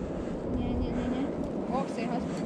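Steady wind noise on the microphone, with a faint voice heard briefly near the middle.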